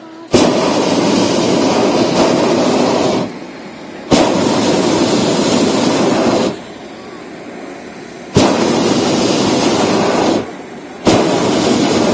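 Hot-air balloon's propane burner firing in four blasts of about two to three seconds each, every one starting and stopping abruptly.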